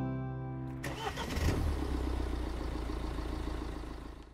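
A strummed acoustic guitar chord rings out. About a second in, a car engine starts and then runs at a steady idle, fading away near the end.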